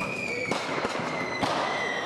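Street riot sound: several sharp bangs or pops spread through a couple of seconds over a noisy outdoor background, with a steady high-pitched tone running through it.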